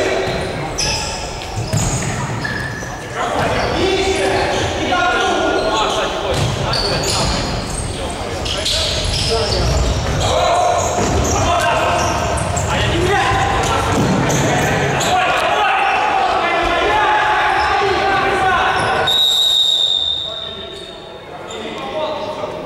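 Futsal match in a large, echoing sports hall: players' shouts and calls, with the ball being kicked and bouncing on the hard court floor. Near the end a single steady whistle sounds for about a second and a half.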